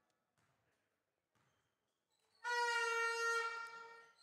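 Near silence, then a loud, steady horn tone about two and a half seconds in, fading away near the end.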